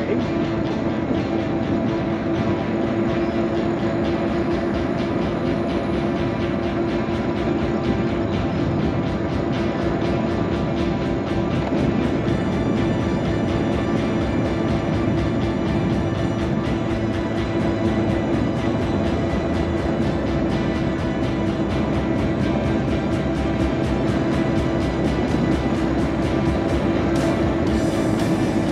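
Electric mobility scooter running at a steady speed: a constant motor hum that does not change in pitch, over the noise of its tyres on the paved road.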